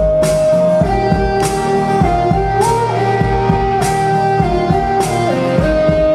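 Live band playing a folk-pop song: a strummed acoustic guitar over a steady beat, with a held melody line stepping slowly between a few notes and an accent about every second and a quarter.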